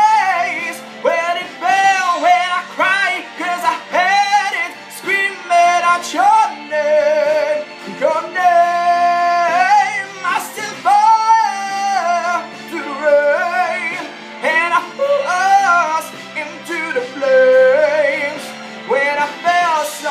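A man singing high, wordless vocal runs and held notes over sustained backing chords, an ad-lib passage in a pop ballad cover.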